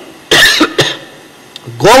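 A man coughs briefly into his fist at a microphone about a third of a second in, with a smaller second burst just after. Speech starts again near the end.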